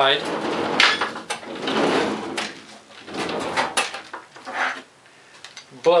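Plywood doors of a small tool-storage cabinet being opened and shut, a run of wooden knocks and sliding scrapes.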